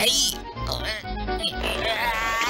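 Cartoon background music with short, wobbling, non-word vocal noises from a flattened animated character as it puffs back into shape, and a brief high falling whistle-like effect at the start.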